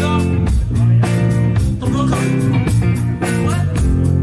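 Live rock band playing: electric guitars and bass guitar over a steady drum beat.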